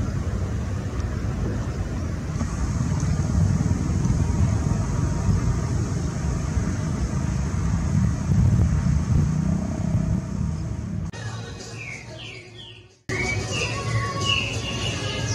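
Low, steady rumble of wind buffeting the microphone outdoors, fading away about eleven seconds in with a few short falling chirps. Music starts abruptly near the end.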